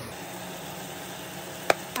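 Steady low hiss with a faint hum underneath, and one sharp click near the end.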